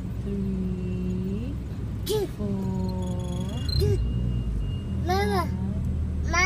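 Wordless vocal sounds: two long held voice tones that rise at the end, then a toddler's short rise-and-fall cries, over the steady low rumble of a car's engine.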